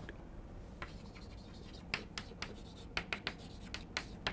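Chalk writing on a blackboard: faint, irregular short taps and scrapes of the chalk stick, starting about a second in.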